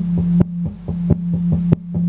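Fingers tapping a dynamic microphone's grille in a quick rhythm of about four taps a second, heard through a high-gain two-stage valve preamp and powered speaker. Under the taps runs a steady low hum.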